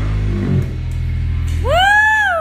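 End of a live rock song: low bass and guitar notes held and ringing out through the amplifiers. Near the end a high whooping call rises in pitch.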